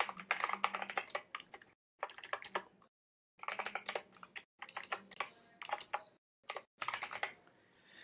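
Typing on a computer keyboard: quick runs of keystrokes in several bursts, with short pauses between them.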